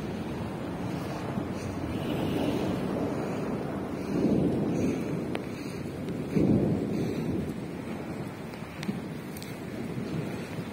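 Steady rushing noise of rain and wind, swelling into a louder low rumble of thunder about four seconds in and again, more suddenly, a little after six seconds.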